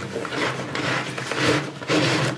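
A leather flash pouch rubbing and scuffing against the padded fabric of a camera bag's tight side pocket as it is pushed down in by hand, a continuous scraping noise.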